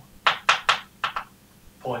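Chalk on a blackboard: about five quick, sharp taps and strokes in the first second or so as short arrows and labels are written.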